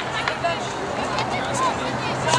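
Distant voices and shouts of players and spectators around an outdoor soccer field, scattered and unclear, over a low steady hum.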